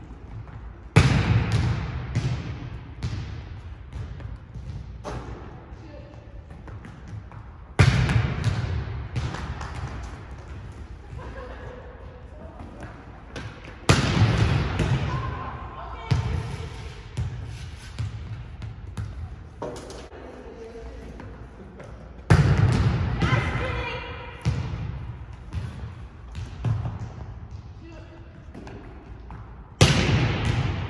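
Volleyball attacks on a hardwood gym floor: each spike is a sharp smack of the hand on the ball, followed by the ball bouncing on the floor and echoing around the hall. This happens five times, every six to eight seconds.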